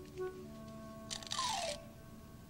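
Soft background music of held tones, with a short hissing whoosh and a falling tone a little past a second in, like a comic sound effect.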